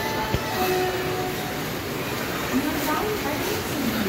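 Busy railway station din: a steady background of many people's voices mixed with train noise from the tracks, with a brief sharp click just under half a second in.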